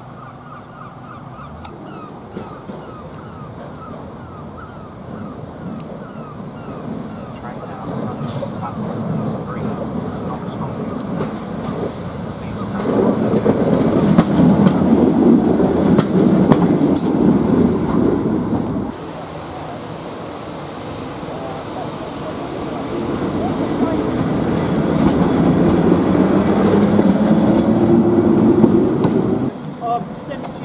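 GB Railfreight Class 73 electro-diesel locomotive approaching and passing close by, building to a loud rumble that cuts off suddenly. Another rise in rumble follows, ending abruptly near the end.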